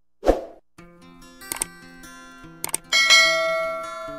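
Outro music with animated subscribe-button sound effects: a sudden swish just after the start, then gentle guitar music with two quick pairs of clicks and a bright ding about three seconds in that rings out slowly.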